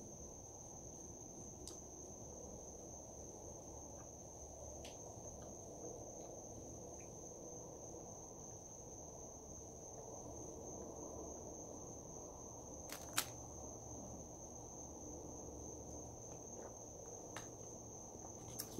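Faint, quiet background with a steady high-pitched whine that does not break, and a single sharp click about 13 seconds in.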